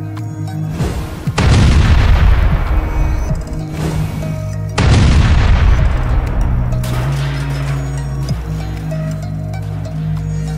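Two explosion booms about three and a half seconds apart, each a sudden blast that dies away over a couple of seconds, from oil derricks blowing up. Background music with steady low tones runs beneath.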